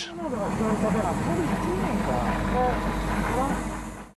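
Steady low machinery rumble with indistinct voices talking in the background.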